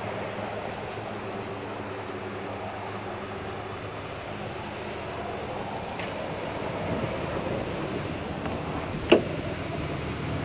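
Ford Ranger's 4.0-litre V6 idling steadily, heard around the tailpipe and along the side of the truck. About nine seconds in, the driver's door latch clicks sharply as the door is opened.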